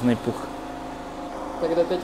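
Portable generator running with a steady, even hum, with a brief voice at the start and another voice coming in near the end.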